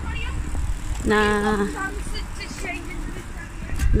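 City street traffic: a steady low rumble of road vehicles passing. A woman says a single short word about a second in.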